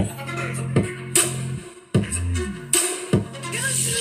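A JBL Charge 5 portable Bluetooth speaker playing electronic music: held deep bass notes, sharp drum hits, and a falling bass slide about halfway through after a brief drop-out.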